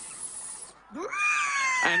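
A long, high 'sssss' hiss imitating a python, stopping under a second in. It is followed by a loud, high tone that slides slowly downward.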